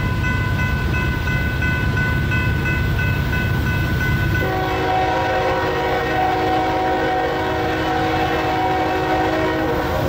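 A diesel freight locomotive's multi-chime air horn sounds one long blast, starting about four and a half seconds in and lasting about five seconds, over a steady low rumble from the train. A steady high tone runs through the first half.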